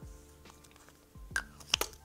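Soft background music with a low beat. Near the end come a few quick, sharp lip smacks as lip balm is pressed into the lips.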